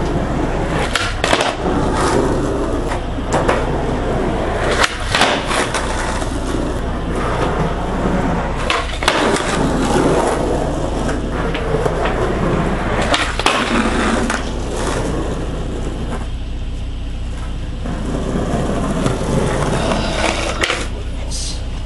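Skateboard wheels rolling on a concrete garage floor, broken several times by the sharp clack of the board popping and landing as flip tricks are tried.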